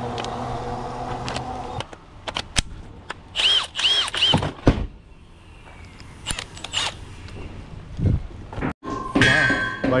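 A Milwaukee cordless impact driver's motor buzzing steadily, stopping about two seconds in. Then scattered clicks and knocks as tools are handled and a lag screw is fitted into the driver's bit.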